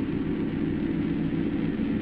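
A steady low rumbling noise with no rhythm or change in pitch, laid over an end title card as an outro sound effect.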